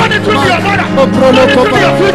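Many voices praying aloud at once over live church-band backing, with a held low keyboard or bass note that shifts pitch near the end.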